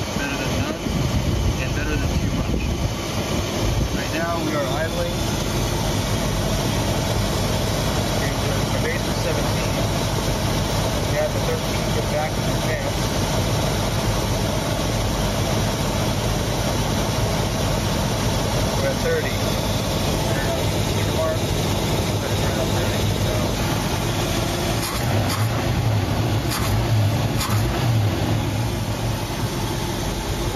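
Ford 289 V8 engine of a 1967 Mustang idling steadily at about 700 RPM, running on freshly set ignition timing after a distributor recurve. It gets a little louder for a few seconds near the end.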